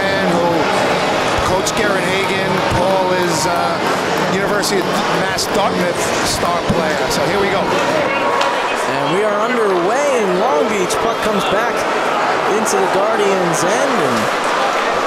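Ice hockey rink sound during play: voices of the crowd and players calling out, with frequent sharp clacks of sticks and puck on the ice and boards.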